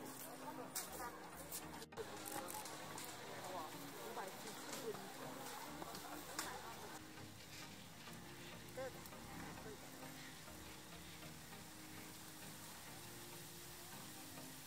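Outdoor ambience of people talking in the background over a steady hiss. The voices are clearest in the first two seconds, then fainter after an abrupt change.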